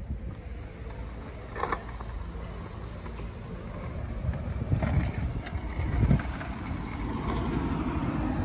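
Skateboard wheels rolling on a concrete skatepark surface, a steady low rumble with a few short clacks.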